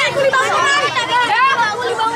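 Several children talking at once in overlapping, excited chatter.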